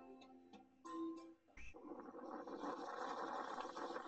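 A few notes of background music end about a second in; then, from about a second and a half in, wind noise on the microphone: a steady rush that slowly grows louder.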